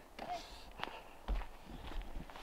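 A few footsteps on a dirt and gravel track, with a brief low rumble a little past halfway.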